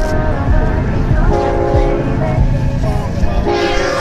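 Train horn sounding a chord of several steady tones, in two long blasts.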